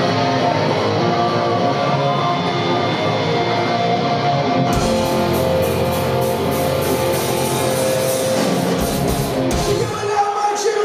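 Live punk rock band opening a song: electric guitar playing alone at first, then the drums and the rest of the band come in about halfway through, loud and driving.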